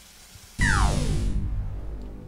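Synthesized death-ray zap sound effect. It bursts in suddenly about half a second in, its pitch sweeping steeply down over a heavy low rumble, then fades.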